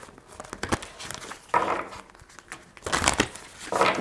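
A deck of cards being shuffled by hand: quick soft clicks and slides of card against card, with two louder swishes in the middle and near the end.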